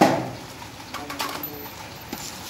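A sharp clatter as a long hand tool is put down against the metal work, ringing briefly and dying away within half a second.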